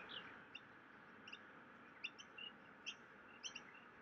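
Faint chirps of small songbirds: short, scattered high calls, several a second at times, over a quiet background.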